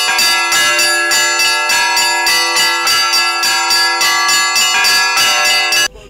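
Orthodox church bells ringing a rapid peal: several bells are struck over and over, several times a second, and their ringing tones overlap. The ringing cuts off suddenly near the end.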